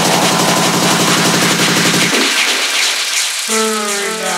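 Electronic dance music build-up in a DJ set: a fast, machine-gun-like roll of hits that stops about halfway, when the bass drops away. A rising wash and a held synth chord follow near the end, leading into the drop.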